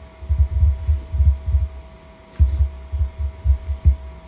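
Irregular low thumps and rumbling in clusters, with a short pause around the middle, over a faint steady hum tone.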